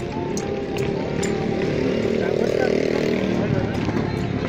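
A live folk dance orchestra plays for a street procession: a held chord swells in the middle, over a beat of sharp strokes, mixed with crowd voices.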